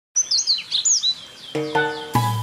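Bird chirping: a quick run of high, sweeping chirps in the first second or so. A tune of held notes comes in about one and a half seconds in.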